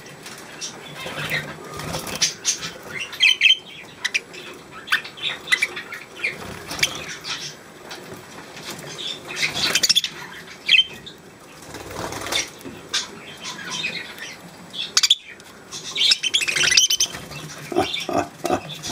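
Pet budgerigars fluttering their wings in a cage as they hop on and off a hand, with short chirps now and then. The flutters and chirps come in irregular bursts, busiest about three seconds in, around ten seconds and near the end.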